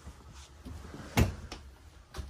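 Wooden cabinet doors under a camper's kitchen sink being handled, with a few faint knocks and one sharp click of a door shutting just over a second in.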